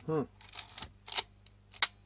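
Olympus 35 RD rangefinder camera clicking as it is worked by hand: several sharp mechanical clicks, the two loudest about a second in and near the end.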